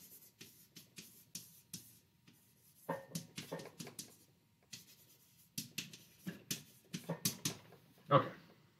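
Marker writing on a glass lightboard: a quick series of short strokes and taps, some of them squeaking.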